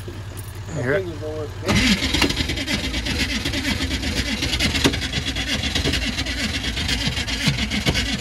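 A steady low engine hum, then about two seconds in the electric starter of a Detroit Diesel two-stroke engine begins cranking, a fast rattling whir over an uneven low chug. It keeps cranking without the engine catching.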